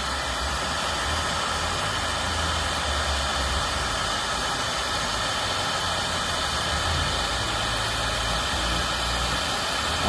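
Hand torch flame burning steadily, a hiss with a low rumble beneath, as it heats the pinched-off end of a refrigerant line to seal it with solder.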